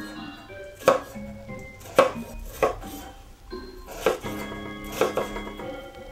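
Chef's knife chopping an onion on a wooden cutting board: separate sharp knocks of the blade on the board, about one a second, over background music.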